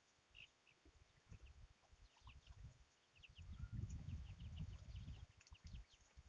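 Near silence: faint background noise, with a faint low rumble in the second half and a few faint, short high chirps.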